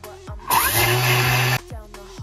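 Thermomix's blade grinding toasted sesame seeds at speed 9: a loud, even motor-and-blade noise with a steady low hum, lasting about a second before it stops suddenly. Background music with a steady beat plays throughout.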